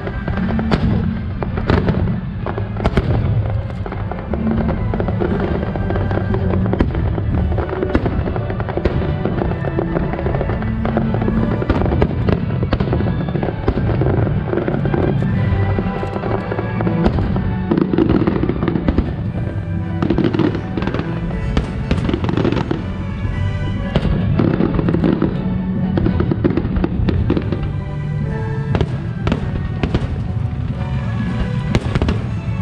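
Aerial fireworks bursting in quick succession, a continuous run of sharp bangs and crackles that grows denser in the second half, over music playing throughout.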